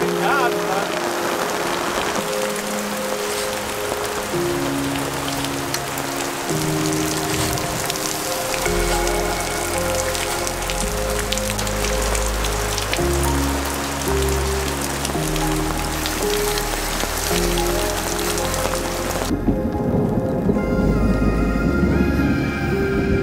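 Steady rain falling, heard under background music of slow held chords; a deep bass comes into the music about eight seconds in. The rain cuts off abruptly near the end while the music carries on.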